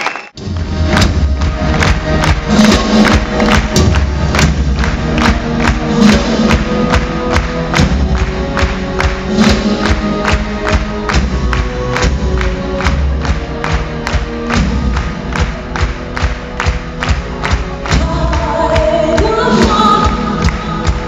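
A rock band and symphony orchestra playing live and loud: a steady drum beat over deep bass and held chords, with crowd noise under the music. It starts abruptly after a brief dropout, and a lead vocal comes in near the end.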